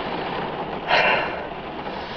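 Heavy rain drumming steadily on a car roof, heard from inside the cabin, with a short breathy exhale about a second in.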